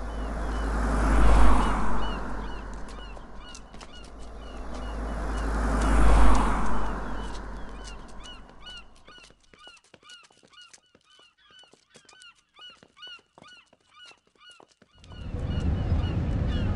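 Two road vehicles passing close by, one about a second and a half in and another about six seconds in, while many birds give short, repeated high calls. The calls carry on alone through a quieter stretch, and a steady rumble of noise comes in near the end.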